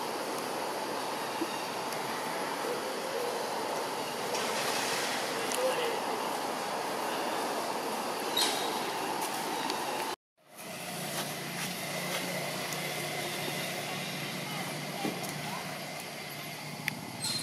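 Steady outdoor background noise with a sudden complete dropout about ten seconds in; after it the background carries a low steady hum.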